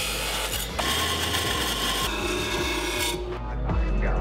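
Abrasive chop saw cutting through stainless steel header tubing: a steady, harsh grinding that stops about three seconds in.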